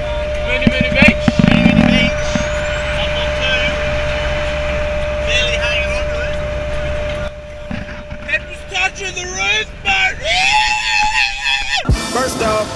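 Car interior road and engine noise at cruising speed: a steady drone with a thin constant tone, and snatches of indistinct talk. About seven seconds in it cuts off, and near the end a quieter stretch follows with a tone that rises and then holds.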